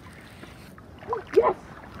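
Steady low rush of a small shallow creek running over stones, with a short excited shout of "Yes!" about a second and a half in.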